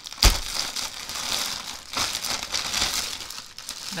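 Clear plastic packaging crinkling and rustling in spells as a bagged scarf is handled and pulled out, with one sharp knock about a quarter second in.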